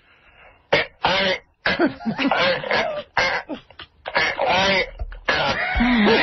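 A man's voice making garbled, unintelligible speech-like sounds in short broken stretches, with coughing-like bursts, after a brief quiet start. Laughter begins near the end.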